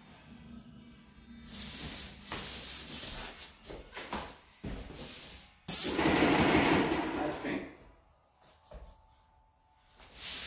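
Airless paint sprayer gun triggered in test bursts into a rag, a hissing spray. The longest and loudest burst comes about six seconds in and lasts about two seconds. It is a check that the water has been purged from the line and paint is coming through.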